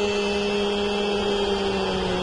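A single long held note at one steady pitch, rich in overtones, sagging slightly in pitch as it ends, over the even noise of a stadium crowd.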